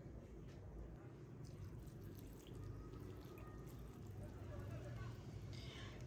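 Faint trickle of yellow food-coloured milk being poured in a swirl onto parboiled basmati rice in a pot, over a faint low hum.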